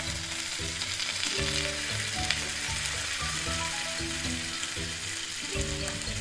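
A white mixture poured over a slice of bread into hot fat in a pan, sizzling and frying. The sizzle starts suddenly as the liquid hits the pan and carries on steadily.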